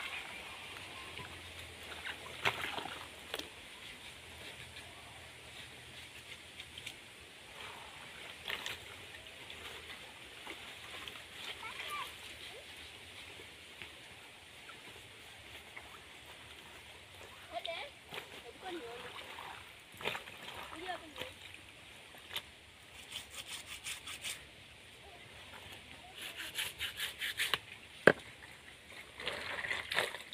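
Clothes being hand-washed in a plastic basin of water: wet fabric sloshing, splashing and being rubbed, with scattered sharp splashes and quick runs of rapid scrubbing strokes in the last third.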